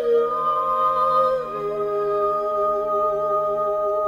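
Slow vocal music: a soprano and a second singer hold long, soft notes. The melody steps down in pitch about a second and a half in, then holds with a gentle vibrato.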